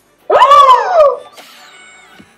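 A woman's high-pitched squeal of excitement: one call of under a second that rises and then falls in pitch.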